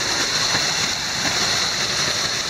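Waterfall pouring down right beside the microphone, a steady even rush of falling, splashing water.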